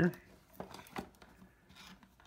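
Light plastic clicks and knocks as a plug-in power adapter is pushed into a power strip, two short clicks about half a second apart, then faint rustling as its cable is handled.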